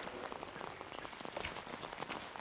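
Steady rain falling, heard as an even hiss dotted with many small, irregular drop ticks.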